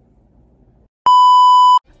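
A single loud, steady electronic bleep tone of under a second that cuts in and off abruptly about a second in, the kind edited over a word to censor it.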